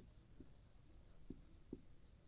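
Faint strokes of a marker writing on a whiteboard, a few short scrapes as letters are formed.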